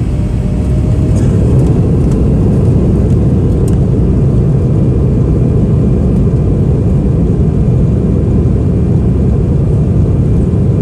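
Cabin noise of an Embraer 175 rolling on the runway: a steady low rumble from its CF34 turbofan engines and wheels, heard from inside the cabin. It grows louder over the first second or so, then holds even.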